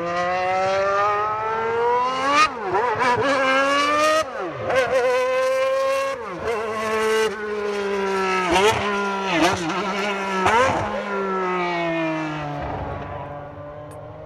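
Honda 1.5-litre twin-turbo V6 of a 1988 McLaren MP4/4 Formula One car accelerating hard through the gears. Its note climbs and drops back at three upshifts in the first six seconds, then dips quickly a few more times at further shifts. Near the end the note falls and fades as the car draws away.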